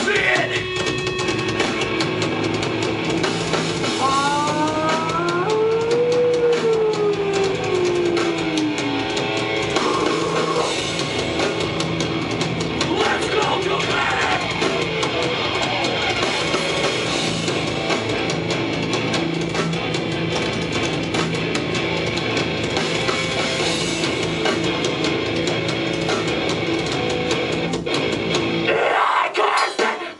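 A hardcore band playing live: heavy distorted guitars, bass and a drum kit. A few seconds in, notes slide up and then down, and the music briefly stops just before the end.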